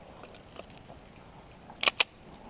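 A quiet pause, then near the end two sharp metallic clicks in quick succession: the slide of an STI 2011 Open pistol being worked as it is unloaded and shown clear.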